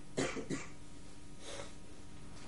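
A man clearing his throat in three short bursts just after the start, much quieter than his speech.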